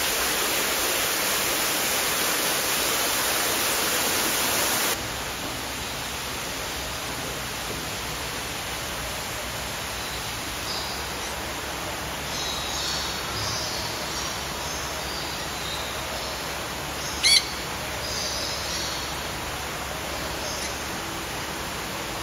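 Falling water from an indoor waterfall splashes loudly for about five seconds and cuts off abruptly. A quieter steady hiss of water follows, with small birds chirping high and thin, and one short, loud, shrill bird call about seventeen seconds in.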